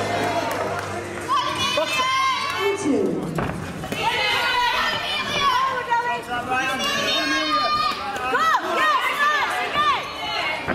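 Spectators shouting and cheering, many voices overlapping, with music fading out in the first second.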